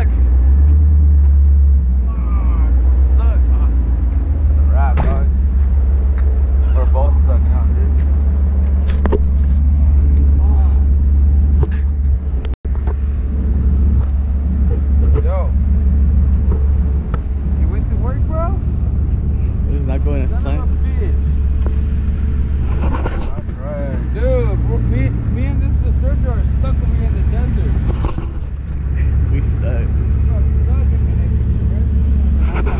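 Pickup truck engine running, with people talking over it; the sound cuts out for an instant just before halfway.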